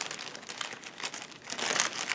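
Clear plastic bag crinkling as it is handled, a fine crackle that grows louder about a second and a half in.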